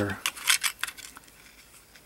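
A few light clicks and taps of hard plastic in the first second as a small LED circuit board is pushed back into a plug-in plastic enclosure, then only faint handling.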